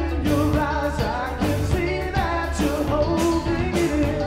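Live pop-rock band playing: a man sings lead over electric bass and a drum kit.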